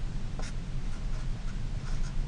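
Felt-tip marker writing on paper: a few short, faint scratchy strokes as characters are written.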